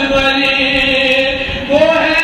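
A man's solo voice chanting an Urdu nazm unaccompanied, drawing out long held notes; a new phrase begins a little louder near the end.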